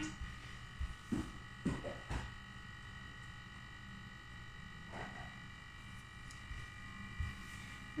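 A few soft footsteps on a tiled floor in the first two seconds, then a couple of fainter knocks later on. A steady electrical buzz runs underneath throughout.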